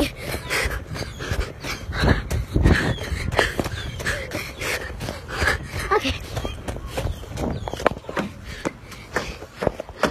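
A child panting hard while running with a phone in her hand, with footsteps and the knocks and rumble of the phone being jostled. There are short breathy vocal sounds between the breaths.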